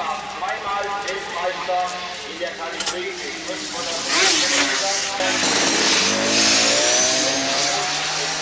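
Grand Prix two-stroke racing motorcycle engines revving, with voices around them. The sound swells into a loud rush of several engines about four seconds in, their pitch rising as the bikes accelerate.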